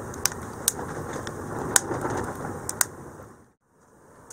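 Wood fire burning in a wood stove: a steady rush of flame with sharp crackles and pops from the burning logs. The sound fades out briefly near the end.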